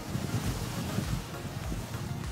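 Wind buffeting the microphone over the steady wash of sea waves.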